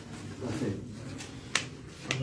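A single sharp click about one and a half seconds in, over faint background voices and room murmur.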